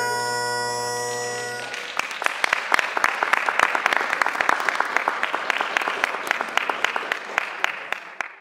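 Bagpipes finish their tune, the last note held over the drone, and stop sharply about two seconds in. Applause from an audience follows, many hands clapping steadily.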